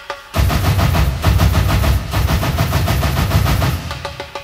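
Techno DJ mix played loud through a rave sound system. About a third of a second in, a dense section with heavy bass and rapid, hammering percussion kicks in. It eases back just before the end.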